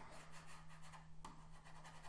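Faint, irregular scratching of a pen stylus rubbed back and forth on a tablet surface while writing is being erased, over a low steady electrical hum.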